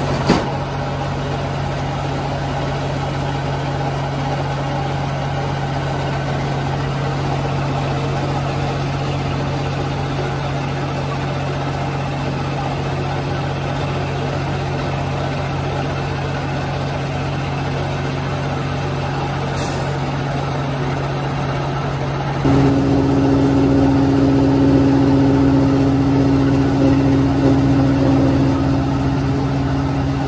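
Fiber-opening machine with its conveyor feed running with a steady low hum. A sharp knock sounds right at the start, and about three quarters of the way through a second, higher hum sets in and the machine grows louder.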